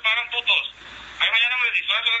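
Speech only: a man's voice in a played audio recording, sounding thin and narrow like a phone or two-way radio message.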